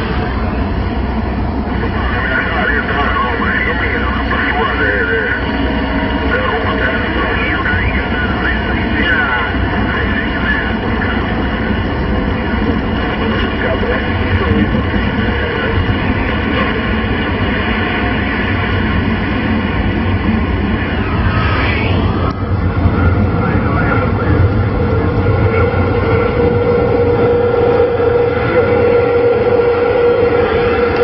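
CB radio receiver (CRT SS6900N on 27 MHz) giving out static and hiss with faint, garbled voices of distant stations coming in on skip propagation. About 21 seconds in a whistle sweeps down and back up, and a steady whistle sits under the signal near the end.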